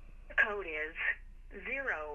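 Automated voice of a phone verification call reading out a sign-up code, heard over the phone with thin telephone-band sound: two short phrases.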